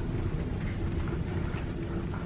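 Steady low rumble of background noise with a faint steady hum.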